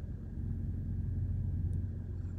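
Steady low rumble of an idling engine, a continuous hum with no change in pitch.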